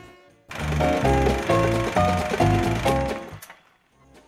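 Short musical jingle: a quick series of loud chords over a low bass, starting about half a second in and fading out near the end.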